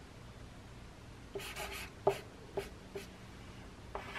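Marker drawing on paper: a handful of short, quick strokes that begin a little over a second in.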